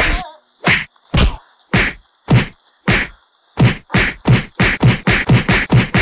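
A rapid series of punch and smack impacts from a staged fight, about one every half second at first, then quickening to about three a second in the second half. A short vocal cry sounds at the start.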